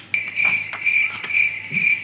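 Cricket chirping: a steady run of short, high chirps, about three a second, that starts abruptly.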